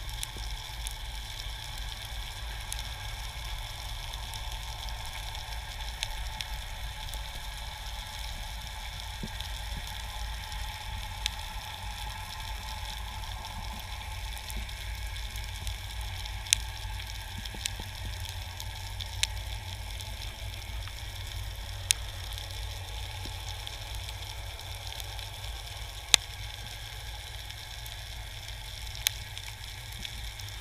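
Underwater ambience picked up by a camera on a spearfishing dive over a rocky seabed: a steady crackling hiss, with a sharp click every few seconds.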